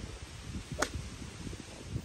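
A golf club striking a ball once: a single sharp click about a second in, over low rumbling outdoor noise.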